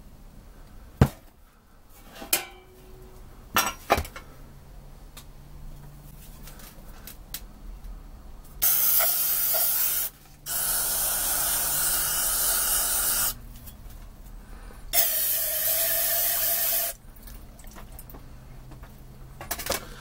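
Aerosol spray can sprayed in three bursts, about one and a half, three and two seconds long, cleaning out a cast-iron brake master cylinder over a metal pan. A few sharp knocks come in the first four seconds.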